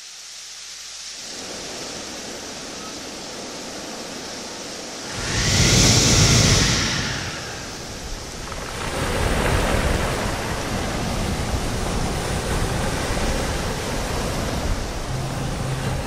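Sea waves washing ashore: a steady rushing hiss that fades in, with a loud surge about five seconds in and a second swell from about nine seconds. A low music note comes in near the end.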